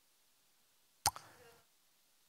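A single short, sharp click about a second in, with otherwise near silence around it.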